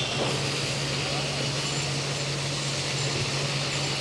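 Marinated fish pieces frying in hot mustard-yellow oil in an iron kadhai: a steady sizzle, with a steady low hum underneath.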